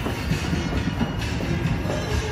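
Casino background music over a steady din, with a few short knocks scattered through it.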